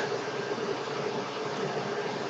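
Steady background hiss of the recording, room tone with a faint low hum, between sentences of narration.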